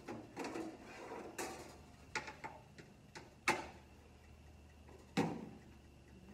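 Toaster oven door and a metal baking tray being handled as the tray is pulled out and set down: a series of sharp knocks and clatters, the loudest about three and a half seconds in and another about five seconds in.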